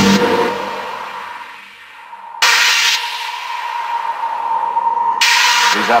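Electronic track playing from a Polyend Tracker, in a sparse stretch without drums: a steady held tone with three rushes of noise, one right at the start, one about halfway and one near the end.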